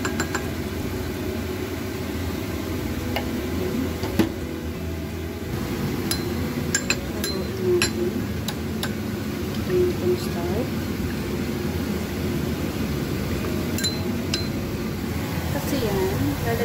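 A metal spoon clinks against a white ceramic bowl while stirring cornstarch into water: a few sharp clinks, bunched about six to nine seconds in and again near the end, over a steady low hum.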